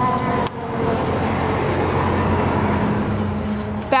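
The motorhome's 12.5-kilowatt generator running steadily with a low, even drone, loud at close range. There is a brief click and dip in level about half a second in.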